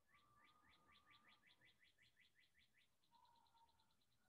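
Faint birdsong: a run of quick rising chirps, about five a second, then a faster trill of higher notes near the end, with a thin steady whistle beneath.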